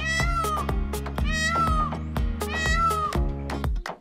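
Indian peafowl (peacock) calling three times, each call under a second long and arching slightly in pitch, over background music with a steady beat.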